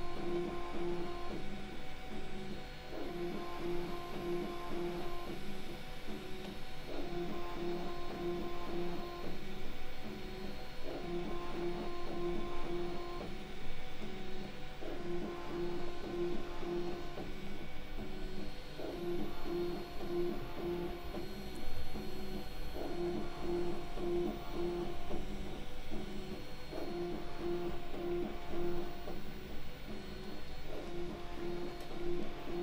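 Panospace 3D printer's stepper motors whining in steady pitched tones as the print head traces the walls of a small hollow cube. Each lap starts and stops the same tones in a pattern that repeats about every four seconds.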